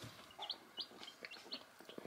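Black sex link and Ameraucana baby chicks peeping faintly: a scatter of short, high peeps.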